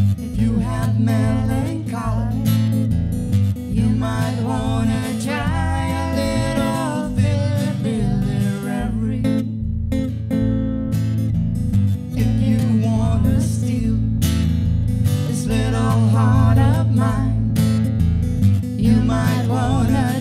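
Live acoustic folk song: strummed acoustic guitar with a steady low accompaniment, and a voice singing a mellow melody over it.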